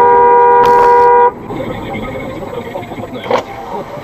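A car horn sounding one steady blast of about a second and a quarter, with two pitches, at a car cutting in close. It is followed by quieter road and engine noise heard from inside the car as it slows.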